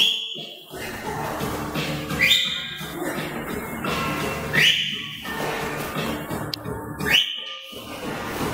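Music, with a sharp high tone that sweeps up and then holds, coming back about every two and a half seconds.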